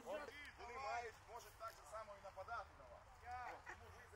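Faint, indistinct voices talking in the background.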